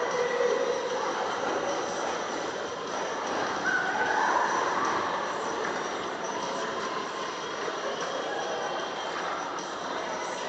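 Indoor swimming pool ambience: a steady, echoing wash of water noise from swimmers' splashing, with faint distant voices in the hall.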